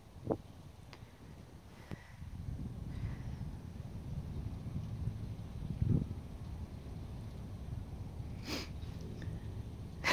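Faint low rumble of wind on the microphone, with a few light clicks and one short sniff about eight and a half seconds in.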